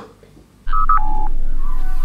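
Star Trek-style replicator sound effect. A few short electronic beeps, two higher and one lower, come with a loud steady hum that starts suddenly under a second in. A shimmering rising tone builds near the end.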